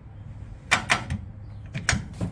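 Floor-mounted automatic transmission shift lever being pulled out of park and moved through its gates, its detents giving a few sharp clicks, the last near the end. The lever moves easily on its newly fitted shift cable: "like butter", "one finger pull".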